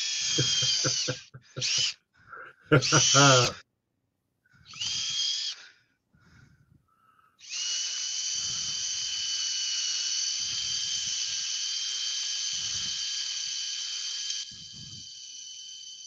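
Ryobi cordless drill boring into a wooden bowl to reach nails buried deep in the wood. A few short bursts of the motor come first, then a steady high whine for about seven seconds that drops to a quieter run near the end.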